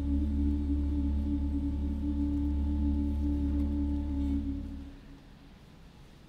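Church organ playing slow, sustained chords over a deep held bass note; the chord is released about five seconds in.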